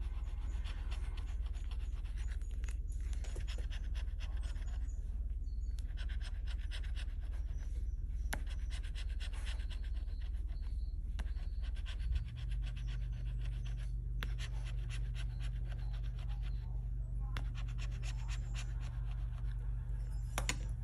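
Bottle opener scraping the latex coating off a paper scratch-off lottery ticket in quick back-and-forth strokes, in runs with a few short pauses, over a steady low hum.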